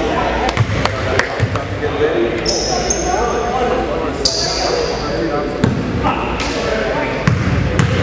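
A basketball bouncing on a hardwood gym floor, a few sharp bounces around the first second and again near the end, over spectators' steady chatter. Two short, high-pitched squeaks come in the middle.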